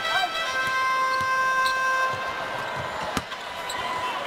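Basketball dribbled on a hardwood court, with one sharp bounce about three seconds in, under long held music tones in the arena.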